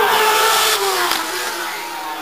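Racing motorcycle engines at high revs, their pitch sliding slowly down and the sound fading as they move away.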